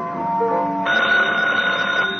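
A music bridge plays, and about a second in a telephone bell starts ringing steadily over it, a call coming in.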